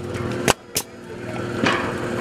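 Pneumatic nail gun firing two sharp shots in quick succession, about a third of a second apart, over a faint music bed.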